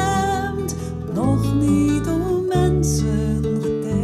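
Slow song accompanied by acoustic guitar, with sustained plucked and strummed chords.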